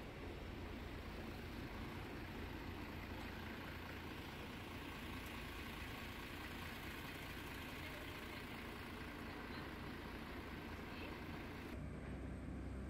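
Steady city street noise: motor traffic and engines running as a low, continuous rumble.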